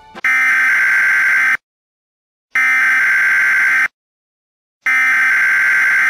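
Emergency Alert System SAME header: three bursts of raspy, warbling digital data tones, each about a second and a half long, with about a second of silence between them. It is the coded start of an EAS broadcast, the part that precedes the attention tone.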